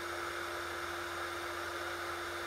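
Small plug-in ceramic space heater's fan running steadily: an even rush of air with a low, constant hum.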